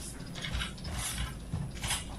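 Sheets of paper rustling and shuffling in a few short bursts as they are handled and sorted at a desk.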